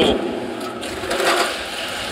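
Juice transfer pump running: a steady, rapid mechanical rattle with a hiss.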